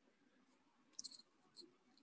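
Near silence, broken by a few faint, short ticks of a stylus writing on a tablet screen: a small cluster about a second in and one more a little later.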